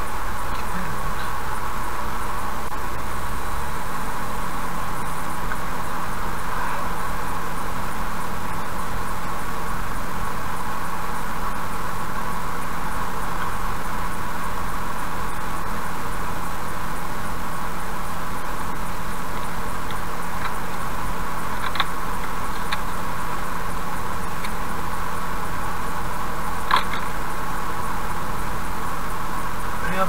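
Steady road and engine noise inside a car cruising at about 72 km/h on a highway, with a few sharp clicks in the last third.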